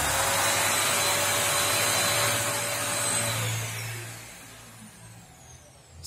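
Yokiji KS-01-150-50 brushless electric random orbital sander running free, with a Kärcher vacuum drawing air through the long extraction hose attached to it: a steady rushing noise with a faint steady whine. A little over halfway through it is switched off and winds down over about a second.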